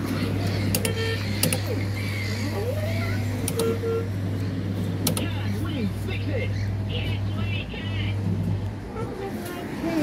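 A steady low motor hum, like an idling engine, that stops about nine seconds in, with faint voices and gliding tones over it.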